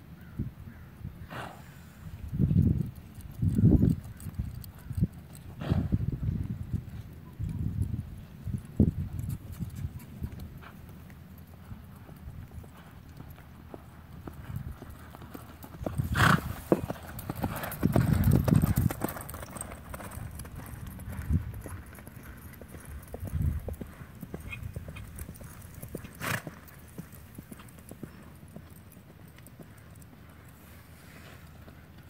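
Horse's hooves thudding on a soft dirt arena as it is ridden at a canter, loudest as it passes close by about halfway through, then fading as it moves away.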